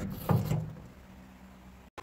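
A car door on the Acura CL shuts or unlatches with a single heavy clunk about a quarter second in, dying away over half a second, with a faint steady hum under it afterwards.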